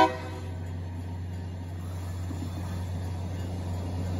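Diesel freight locomotive approaching, its engine rumble growing slowly louder; a horn blast cuts off right at the start.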